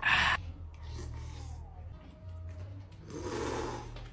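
A man gives a short, loud gasping 'ahh' right after a swig of cola. About three seconds later comes a noisy slurp of nearly a second as he sucks in a forkful of noodles.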